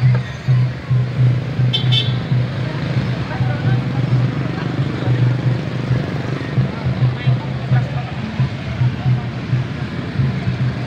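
Busy street procession ambience: voices chattering and vehicles on the road, over a steady low pulsing throb. A short horn-like toot sounds about two seconds in.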